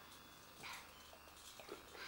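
Near silence: room tone, with a faint short sound about two-thirds of a second in and another shortly before the end.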